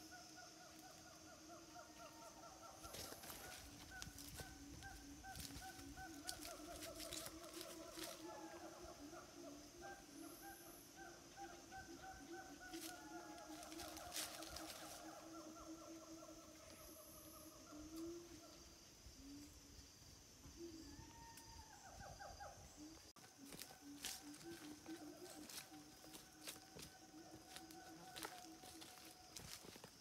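Faint forest ambience: a steady high-pitched insect drone and a lower, rapidly pulsing trill that runs most of the way through, with scattered faint clicks and rustles.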